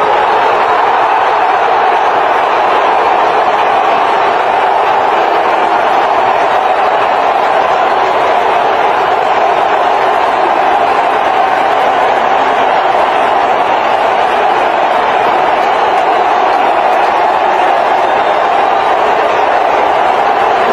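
A steady, loud wash of crowd-like noise that holds without a break.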